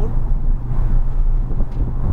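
Porsche 911 GT3's flat-six engine and road noise heard from inside the cabin, a steady low drone while cruising at about 35 mph.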